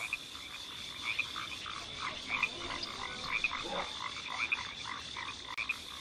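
Frogs croaking in a chorus: many short croaks, several a second and irregular, over a thin steady high tone.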